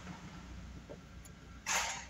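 2007 Suzuki SX4's 2.0-litre four-cylinder engine running at idle, a steady low rumble heard from inside the cabin. A short burst of rustling noise comes near the end.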